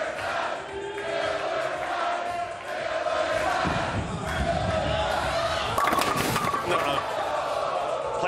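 A crowd chanting and yelling while a bowling ball rolls down the lane with a low rumble, then crashes into the pins about six seconds in.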